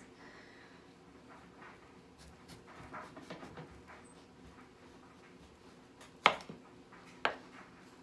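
Big kitchen knife slicing the top off a raw turnip on a wooden cutting board: faint crunching as the blade works through the solid root, then two sharp knocks about a second apart near the end as the knife meets the board.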